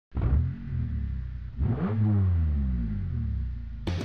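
Car engine running with a deep rumble, revved once about one and a half seconds in, the pitch climbing and then falling back to idle. Music comes in just at the end.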